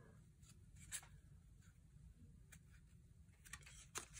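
Near silence, with a few faint taps and rubs from a stack of 1987 Topps cardboard baseball cards being handled: one about a second in, another midway, and a small cluster near the end.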